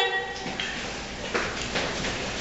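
Indistinct low voices of a few people talking in a room, with one voice trailing off at the start.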